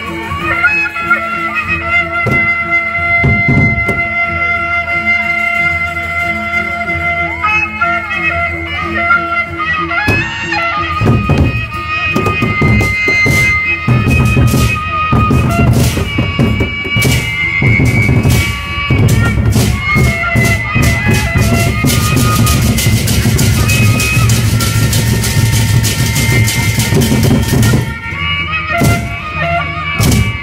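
Sasak gendang beleq ensemble playing: a wind instrument holds long notes for the first third, then the big barrel drums come in with dense, fast beating, joined about two-thirds in by clashing cymbals.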